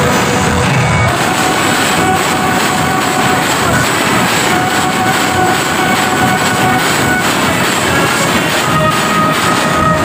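Live rock band playing loud on stage, an instrumental stretch with electric guitars, heard as a dense wash with a few long held notes.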